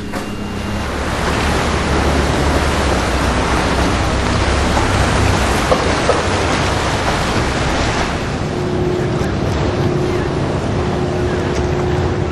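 Steady rushing noise of wind and water, heavy in the low end, with a faint steady hum joining about eight and a half seconds in.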